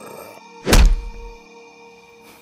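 A single heavy thud with a deep low rumble that dies away within about a second, about three-quarters of a second in, laid over soft sustained intro music.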